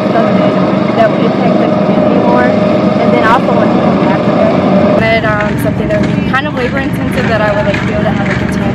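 A woman talking, her words partly buried under a loud, steady noise that runs throughout, with a thin steady tone in it.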